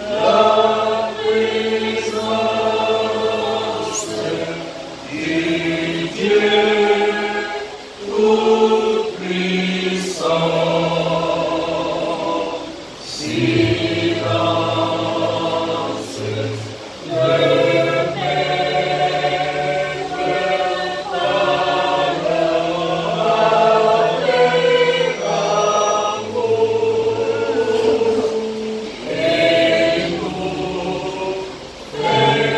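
A church choir singing a hymn in slow, held notes, phrase after phrase with short breaks between them.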